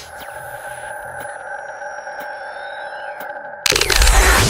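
Electronic logo-animation sound effect: several steady held tones like a sonar hum, with faint falling sweeps and a few ticks above them. Near the end a sudden loud rushing sound cuts in.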